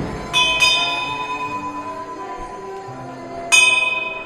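A high-pitched bell struck three times: two quick strokes just after the start, then one more near the end, each ringing on and fading slowly.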